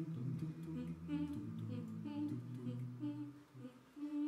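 A cappella mixed choir singing wordless, sustained chords, with a wavering higher voice over them. The sound thins and drops away shortly before the end, then the chord comes back in.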